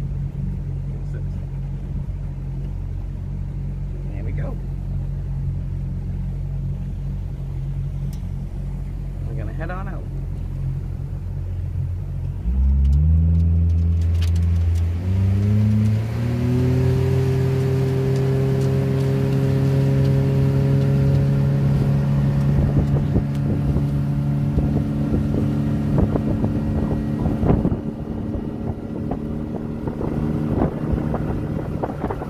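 Small motorboat's engine idling steadily, then throttled up a little before halfway through: its pitch climbs in a couple of steps and it settles into a steady higher-speed run as wind and water rush past.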